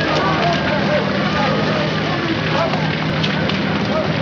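Many overlapping voices, none of them clear, over a steady noisy background with a low hum and light crackle.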